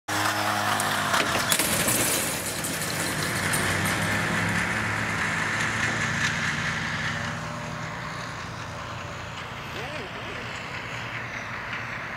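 Motor of a racing lure drive running, a steady pitched hum with a higher whir, loudest in the first two seconds and fading away after about seven seconds.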